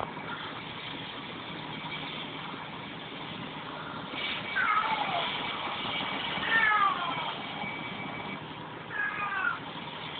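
Domestic cat meowing three times, about four and a half, six and a half and nine seconds in, each call falling in pitch, over a steady low hiss.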